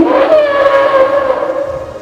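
Film sound effect of a brachiosaurus call: one long, loud call that starts suddenly, sinks a little in pitch and fades near the end.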